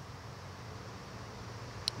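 Faint steady low background hum with light hiss, and one small click just before the end.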